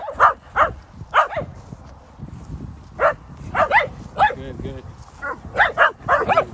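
Dogs barking and yipping in rough play: short, sharp barks in irregular clusters, some in quick pairs.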